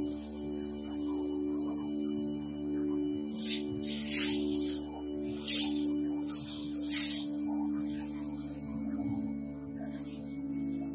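Background music with sustained low tones, over which a garden hose spray nozzle hisses in several short, irregular bursts between about three and seven seconds in.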